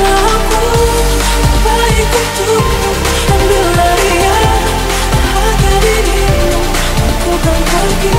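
Techno music: a steady, fast kick drum, about two to three beats a second, under a wavering melody line.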